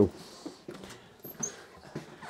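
Faint footsteps and small knocks as a tall cupboard door is pulled open, with two very brief high squeaks about halfway through.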